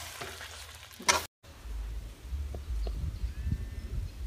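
A spatula stirring cooked ridge gourd sabzi in a kadhai, with a light sizzle and a sharper scrape about a second in. The sound then cuts off and a low rumble follows.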